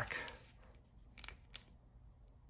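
Foil wrapper of a Topps Fire card pack being handled and torn open by hand: a faint rustle, then a few sharp crackles a little past the first second.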